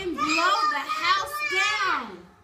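Young children's voices calling out, high-pitched and loud, with no clear words.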